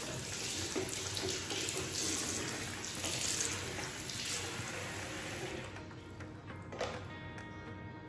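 Water tap running into a bathroom sink, a steady rush that dies away about six seconds in.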